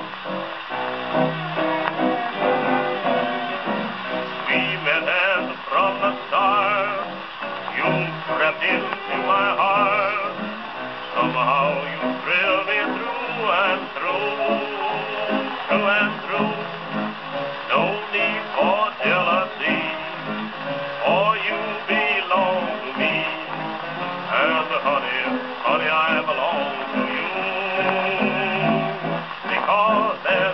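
A 1920s Brunswick 78 rpm shellac record playing on an EMG acoustic horn gramophone with a fibre needle: a dance-band passage with wavering melody lines and a narrow, treble-cut old-record sound.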